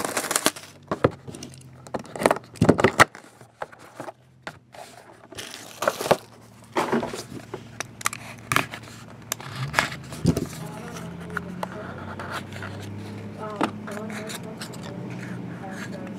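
Hands unwrapping and cutting open a sealed cardboard trading-card box: crinkling shrink wrap, a knife blade scraping along the seal, and sharp cardboard clicks and scuffs, thickest in the first few seconds. A faint low hum comes in about ten seconds in.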